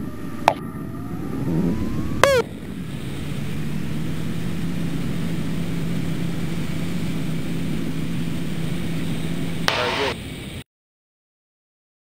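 Extra 300L's engine and propeller running with wind noise through spin recovery, rising in pitch over the first few seconds and then holding a steady note. A brief sharp sound comes about two seconds in, and the sound cuts off suddenly near the end.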